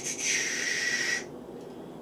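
A person's hissing intake of breath, about a second long, taken during a pause before speaking again.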